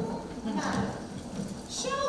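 Wordless voices and quick footsteps on a wooden stage as several performers jump up and hurry together.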